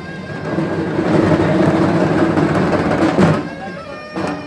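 Loud live festival music with drums: a stroke at the start, a dense sustained passage through the middle, and another stroke just before the end.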